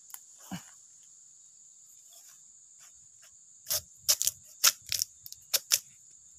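A steady high-pitched insect drone of cicadas or crickets. Over the last two seconds it is cut by a quick run of about eight sharp cracks and snaps from bamboo being handled and broken open.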